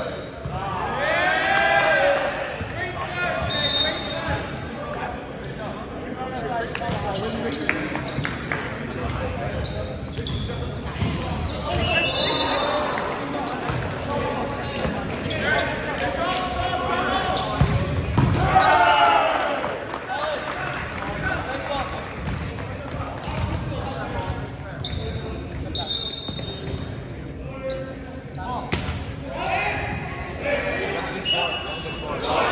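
Indoor volleyball play in a reverberant gym: sharp smacks of the ball being hit and landing, sneakers squeaking briefly on the hardwood, and players shouting, loudest about a second in and again around two-thirds of the way through.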